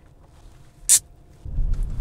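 A single sharp click about a second in, then from about a second and a half in the steady low rumble of a car driving, heard from inside the cabin.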